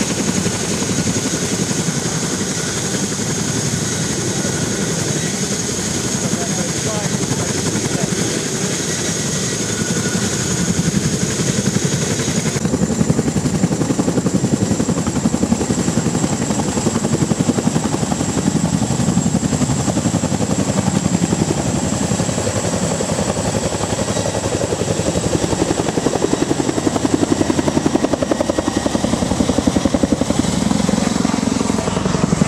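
Boeing CH-47 Chinook tandem-rotor helicopter running with its rotors turning, the rapid rotor chop under a high, steady turbine whine. Partway through, the whine steps up in pitch and the sound grows louder as the helicopter lifts off and climbs away.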